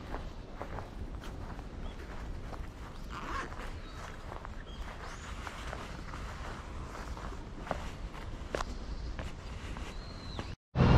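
Footsteps of a person walking on a paved path: irregular light steps and scuffs over a low, steady outdoor background.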